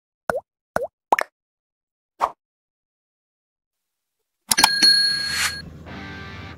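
Intro sound effects: four short blips, each a quick dip and rise in pitch, in the first two seconds or so. About 4.5 s in comes a sudden loud hit with a ringing shimmer that fades about a second later.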